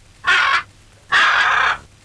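Macaw giving two harsh squawks about half a second apart, the second one longer.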